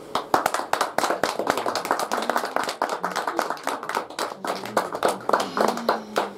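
Audience applauding by hand, with individual claps distinct, as a poem ends.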